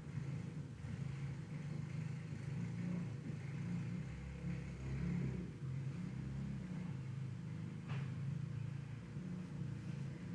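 Faint low rumble of background noise that wavers in level, with a single sharp click about eight seconds in.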